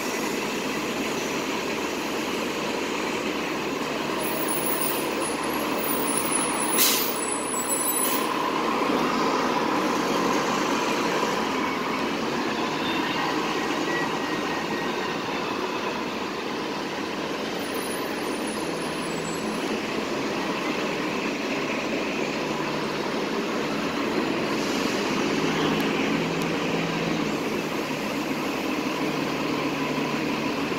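Votran city transit bus driving off, its engine and tyre noise steady, with a brief sharp sound about seven seconds in, the loudest moment.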